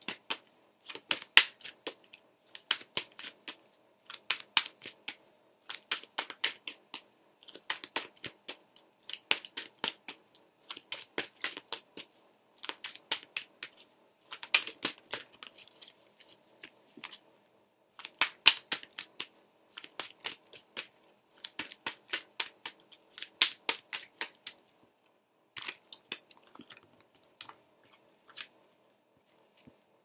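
A deck of oracle cards shuffled by hand: quick rattling card flicks in short bursts about every second and a half, thinning out and stopping about 25 seconds in.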